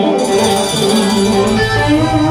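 Blues band playing live: electric guitar and harmonica lines, with drums and bass guitar coming in just after the start.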